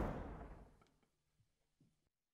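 The ringing tail of the band's loud final hit dying away within about half a second, leaving near silence as the song ends.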